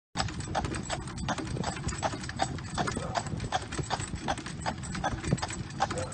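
A white carriage horse's hooves clip-clopping on an asphalt road in a steady rhythm, about three strikes a second, over a low, steady rumble.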